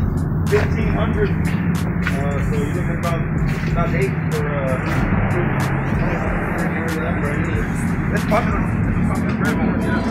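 Indistinct voices and background music in a busy shop, over a steady low hum that fades out about seven seconds in, with scattered clicks and knocks.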